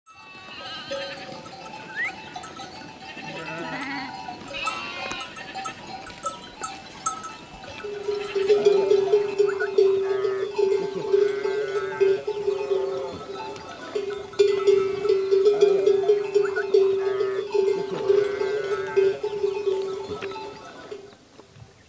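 A flock of sheep and goats bleating. From about eight seconds in, a livestock bell rings on and on in quick, steady clanks over the bleating.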